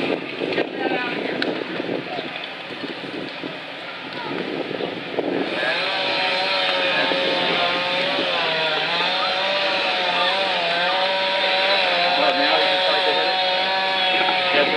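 An engine starts up about five seconds in and runs on at a high, steady speed, its pitch wavering slightly up and down, with people talking.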